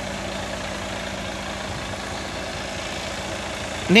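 Mercedes-Benz Tourismo coach's Euro 6 BlueTEC diesel engine idling steadily, an even low hum.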